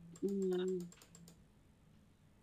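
Computer keyboard keys clicking in a quick run, stopping a little over a second in, with a short steady hummed 'mmm' from a voice for about half a second near the start.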